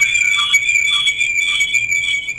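High-pitched audio feedback squeal on a live phone-in line: a steady whine with fainter higher overtones. It comes from a caller's TV being too loud, so the broadcast feeds back into the call.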